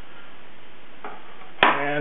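Steady room-tone hiss, broken near the end by a single sharp click as a man's voice starts.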